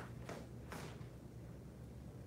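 Movement sounds of a kung fu saber form being performed: three short swishes within the first second, over a low steady room hum.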